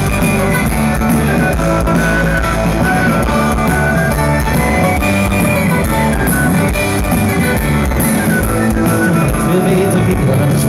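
A rock band playing live through a PA: electric guitars, bass guitar and drum kit in a loud, steady, full mix.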